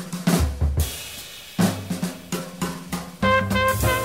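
Jazz drum kit break on a small-group swing recording: snare strokes, rimshots, bass drum and cymbals. The string bass comes back in just under halfway through, and the horns re-enter near the end.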